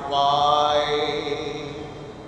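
A man's voice singing one long held note of a hymn, which fades out near the end.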